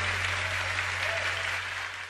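Audience applauding, slowly fading out, over a steady low electrical hum.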